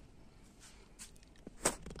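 Quiet ambient background hush, with one brief sharp sound about a second and a half in.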